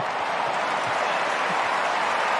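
Stadium crowd at an Australian rules football match cheering and applauding a goal just kicked, a steady even sound.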